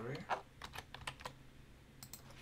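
Typing on a computer keyboard: a quick run of about eight light key clicks in the first second and a half, then fainter.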